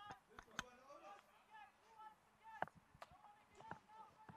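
Near silence, broken by faint, short calls of players' voices from out on the field and a few sharp clicks.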